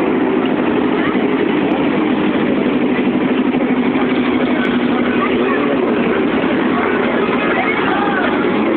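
Many motorcycle engines running at low speed as a group of motorcycles rides slowly past, their tones overlapping in a loud, steady mix.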